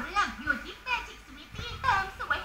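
High-pitched voices talking and exclaiming in a TV commercial, heard through a television's speaker.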